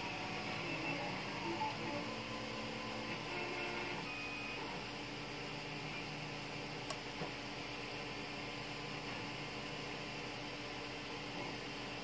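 3D printer running in the background: a steady low hum, with faint shifting motor tones in the first few seconds and a small click about seven seconds in.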